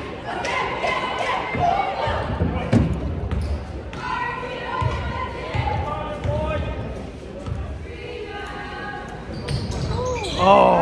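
Basketball bounced several times on a hardwood gym floor, the free-throw shooter's dribbles before the shot, each bounce a dull thud carrying the echo of a large gym.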